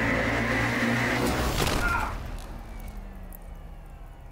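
Horror film suspense soundtrack: a dense, steady drone with held tones that drops away about two seconds in to a faint low hum with slowly falling tones.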